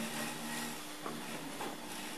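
Quiet room tone in a pause between speech: a steady low hum with a couple of faint clicks.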